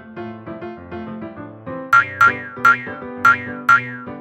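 Bouncy children's cartoon backing music with a keyboard-like melody. About halfway through, five quick cartoon sound effects come in a row, each a short, loud note sliding down in pitch.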